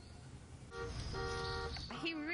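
Electronic beeps from a child's battery-operated ride-on toy car: a short steady tone, then a longer one about half a second long.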